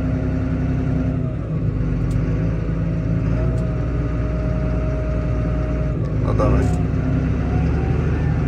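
Tractor engine heard from inside the cab, working under load as it pulls a stuck tractor and disc harrow out with a line. Its note changes about a second in.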